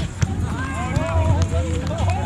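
Voices calling out across an outdoor beach volleyball court, high and gliding in pitch, over a steady low rumble; a couple of sharp knocks sound right at the start.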